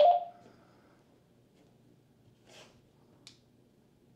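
Mostly a quiet room while the handheld radio is operated. A short tone sounds at the very start, then a faint rustle comes about two and a half seconds in and a small click just after three seconds.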